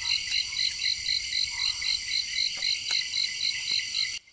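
Dense night chorus of insects, a steady high-pitched shrill with one call pulsing about four times a second, and a few faint ticks.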